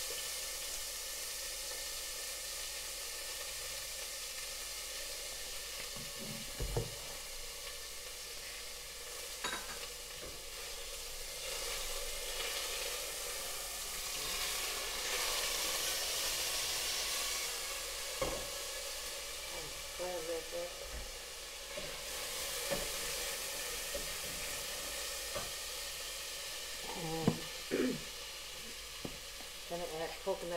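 Curry paste sizzling as it fries in hot olive oil in a stainless steel pot, a steady hiss that grows stronger for several seconds in the middle. A few sharp knocks stand out, most of them near the end.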